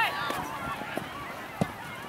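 Distant shouting voices of players and spectators on the field, with a single thud of a soccer ball being kicked about three-quarters of the way through.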